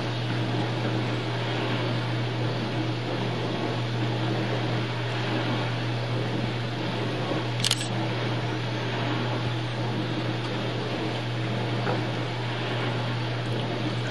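Steady low hum and hiss of a home camcorder's running tape mechanism, with a single sharp click about halfway through.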